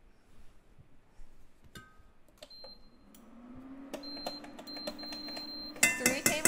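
Metal spoon clicking and scraping in a container of butter, with a low steady hum coming in about three seconds in; near the end the spoon raps loudly several times against the stainless steel pot to knock the butter in.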